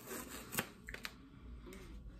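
Faint rustling and scraping of a paper lid handled against a paper ice cream tub, with a couple of soft clicks about half a second and a second in.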